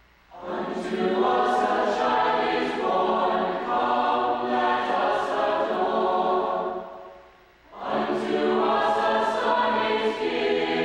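Mixed choir of men's and women's voices singing a four-part English arrangement of an old chant. One long phrase begins a moment in and fades away about seven seconds in, and a second phrase enters about a second later.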